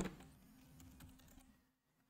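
Faint typing on a computer keyboard: a quick run of light key clicks.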